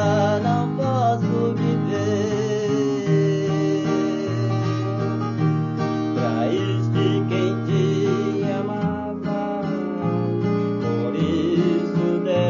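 Solo classical guitar played fingerstyle: a melody with wavering, vibrato-like notes over sustained bass notes that change every second or two.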